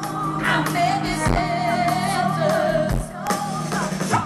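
Live band music with a man singing long, high held notes, heard from the middle of an open-air festival crowd through the stage PA.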